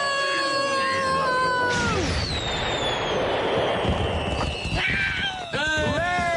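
A cartoon cat's long, held yowl for about the first two seconds, then a slowly falling whistle over a rushing hiss, a sparkling-burst sound effect, until about five seconds in. Voices come in near the end.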